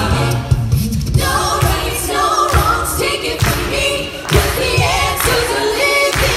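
An a cappella group of mixed voices singing in harmony into handheld microphones, amplified through the stage PA, with no instruments. The song is carried on a steady beat.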